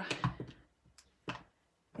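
Plastic ink pad cases being set down on a craft mat: a few light knocks and clicks.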